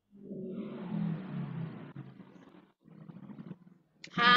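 A man laughing over video-call audio, harsh and distorted. It comes in two stretches with a short break about three seconds in.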